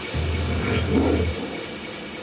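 Live electronic music from synthesizer and mixer: a dense wash of noise over a low bass drone that cuts out about a second and a half in, with a mid-range sound swelling up and fading around the one-second mark.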